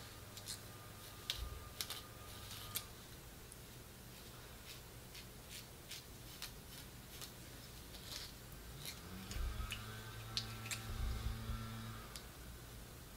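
Faint, irregular clicks and taps of a plastic rat-tail comb and long acrylic nails working the hair and lace at the hairline, over a low steady hum.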